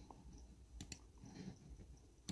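Near silence, with a few faint mouse clicks around the middle.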